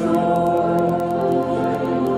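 Church worship chorus sung with accompaniment, in long held notes.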